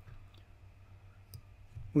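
A few faint, short clicks during a pause, then a man's voice starts right at the end.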